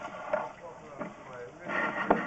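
Faint, hesitant speech from a man pausing mid-sentence, with a short voiced sound near the end, over low background noise.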